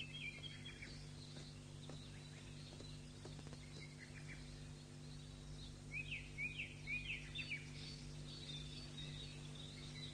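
Faint birdsong ambience: scattered short chirps, then a run of about five quick downward chirps a little past the middle, over a steady low hum.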